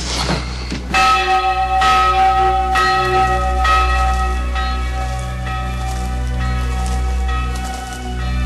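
A church bell tolling for a funeral, about one stroke a second, each stroke ringing on into the next; the tolling starts about a second in.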